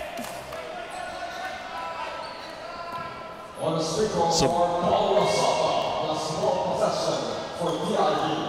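Indoor basketball gym ambience: voices of players and crowd echoing in the hall, with a basketball bouncing on the hardwood court. It grows louder about halfway through.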